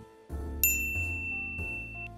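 Soft background music with a single bell-like ding about half a second in, held as one clear high tone to the end.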